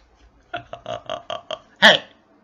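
A man laughing: a run of about six short, quick laugh pulses, then a louder one near the end.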